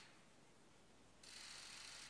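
Near silence, with a faint stretch of hiss starting a little over a second in.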